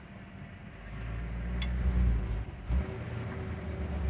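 A 1958 Ford Fairlane 500's 352 cubic-inch V8 running, heard from inside the cabin as a low rumble. It builds from about a second in and eases off just before three seconds.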